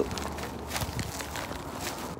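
Faint footsteps of a person walking, a few soft, irregular steps over a low background hum.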